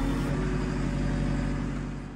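JCB 3CX14 backhoe's 74 hp JCB EcoMax diesel engine running steadily, heard from inside the cab, fading out near the end.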